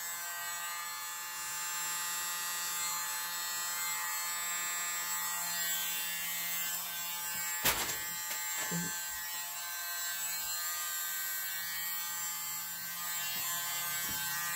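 Small electric mini blower (a keyboard duster) running steadily with a motor whine. There is a single sharp knock about halfway through.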